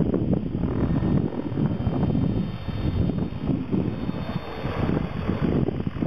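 Strong wind buffeting the microphone in gusts, over the running rotor and motor of a radio-controlled model helicopter as it comes down to land.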